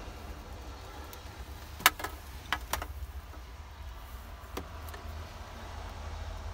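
A few sharp plastic clicks as a CB radio and its handset are handled, the loudest about two seconds in, over a steady low rumble inside a truck cab.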